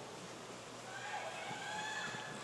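Faint, steady wash of noise in an indoor pool during a freestyle race: water splashing from the swimmers, with distant drawn-out shouts of teammates cheering in the second half.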